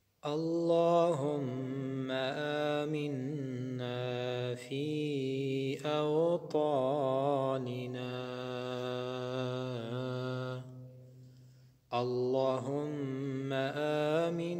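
A man chanting an Arabic supplication (dua) in a slow, melodic style, drawing out long held notes that glide up and down. The chant breaks off about eleven seconds in and starts again a second later.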